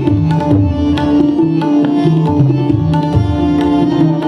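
Instrumental passage of Hindustani-style song accompaniment with no voice: tabla playing a steady rhythmic cycle, harmonium playing a stepped melody, and a tanpura drone underneath.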